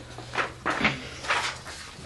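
A sheet of paper rustling and crackling in three short bursts as it is handled and set down.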